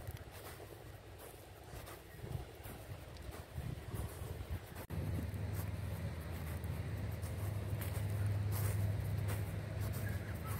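Outdoor ambience with irregular rumbling of wind on the microphone and scattered light knocks. After a sudden break about five seconds in, a steady low hum sets in and grows slightly louder.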